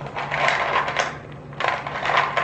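Small hardened clay charms rattling against each other and the sides of a clear plastic storage bin as hands stir through them. The clatter comes in two spells, the second starting just before the end.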